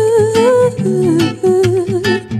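A woman singing a wordless "ooh" vocal line over plucked nylon-string guitar. She holds a long note, which slides down to a lower pitch about a second in, while the guitar plucks under it.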